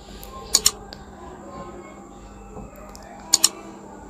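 Two quick double clicks, sharp and short, one pair about half a second in and another near the end, over a low steady background hiss.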